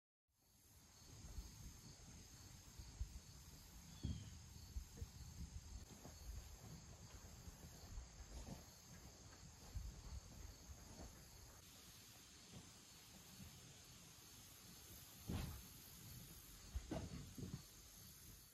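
Faint outdoor ambience after about half a second of silence: a steady high insect chirring over a low, uneven rumble of wind on the microphone, with a few soft bumps.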